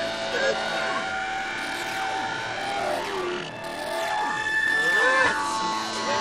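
Indistinct voices with gliding, warped pitches over several held electronic tones: a sampled sound-collage intro to a breakcore track, before the beat comes in.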